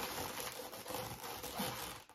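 Latex twisting balloons rubbing under the hands as a balloon sculpture is held and turned, a soft, steady rustle.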